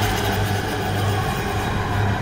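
Horror-film sound design: a loud, steady rumbling roar with a deep hum underneath.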